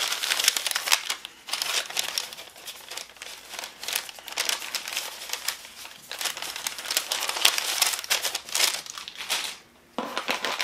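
Packaging crinkling and rustling in irregular bursts as it is handled and unwrapped, falling quiet just before the end.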